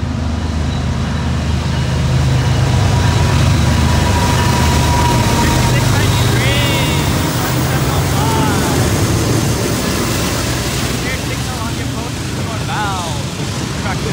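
Freight train's diesel locomotives passing close by at speed, their engines droning loudest from about two to eight seconds in. After that comes the steady rumble of the freight cars' wheels rolling past.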